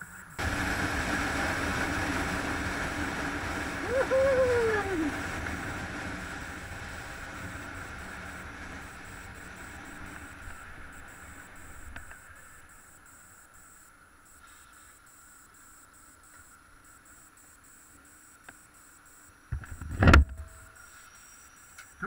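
Motorcycle engine running steadily, heard from on the bike, fading gradually over the first half. A short rising-and-falling tone comes about four seconds in, and a loud, brief thump comes near the end.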